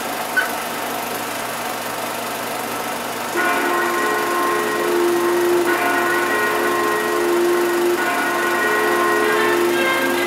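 A film projector running with a steady whir and hiss. About a third of the way in, the film's opening music starts as sustained held chords that change twice.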